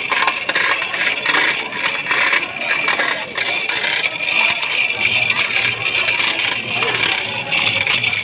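Continuous, irregular rattling and scraping from the rope-and-chain rigging being hauled to raise a tall pole.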